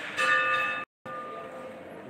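A metal bell struck once, its ringing fading over about a second and a half. The recording drops out completely for a moment partway through the ring.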